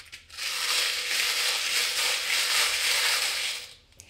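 A hand stirring a glass bowl full of small paper slips and tiny metal charms, a steady rustling clatter that starts just after the beginning and stops shortly before the end.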